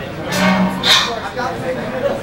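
Voices, with a short low drawn-out vocal sound about a third of a second in, followed by more voice-like sounds.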